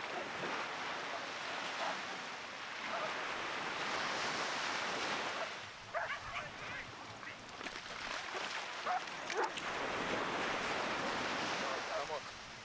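Small waves washing up the beach in slow swells, with a few short dog barks around the middle and again near the end.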